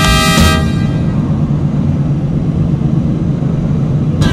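Steady low rumble of a moving car heard from inside its cabin: engine and tyre-on-road noise, left alone once the music stops about half a second in.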